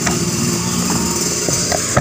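A steady mechanical hum with an even pitch, with a couple of brief knocks about a second and a half in and near the end.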